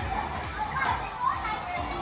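Background chatter of children's voices, short scattered calls and talk over a steady room noise.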